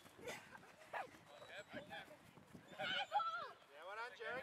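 Children's voices shouting and calling at a distance, the loudest call about three seconds in, with two short knocks in the first second.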